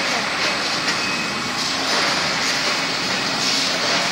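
Loud, steady machinery noise, an even rushing drone with no clear rhythm, from a wire-hanger plastic coating line running.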